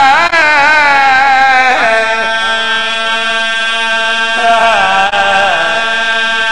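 A man chanting devotional verse (a zakir's sung recitation) through a public-address microphone, drawing out long notes that slide up and down in pitch. A short break comes about two seconds in, and a new phrase starts about four and a half seconds in, over a steady hum.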